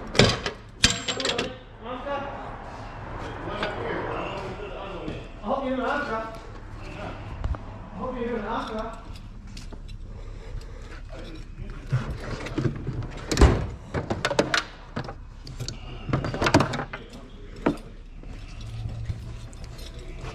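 An indistinct voice for several seconds, then scattered clanks and knocks of tools and metal parts, with one sharp knock about two thirds of the way through.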